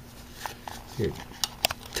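A few light, sharp clicks and taps of hands handling a string trimmer's engine housing and loosened ignition coil.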